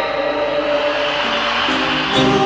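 Live band accompaniment of a Cantopop ballad holding a sustained chord between sung lines, with no vocal.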